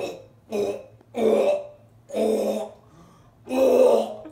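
A man making a run of five loud, guttural burp-like croaks from the throat, each up to half a second long and spaced under a second apart, the last one the loudest. It is a comic stand-in for a name in a nonhuman language, which sounds like a cry for help.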